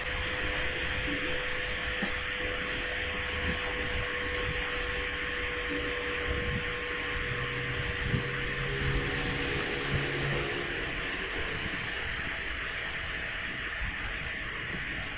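A steady hiss with a faint hum underneath, and a few light knocks and scrapes from a paintbrush being worked over the dusty motor and frame of a bracket fan.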